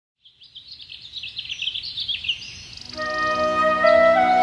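Birds chirping, fading in from silence. About three seconds in, a music intro enters with held notes that grow louder than the birdsong, which carries on above them.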